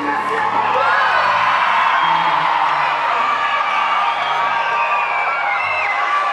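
Concert audience cheering and whooping, many voices at once, over band music with low sustained bass notes.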